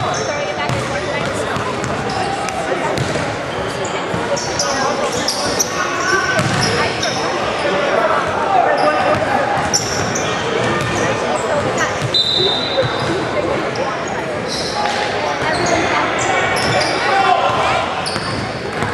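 Basketball bounced on a hardwood gym floor during a free throw, over the talk of spectators echoing in a large gym, with short high sneaker squeaks throughout.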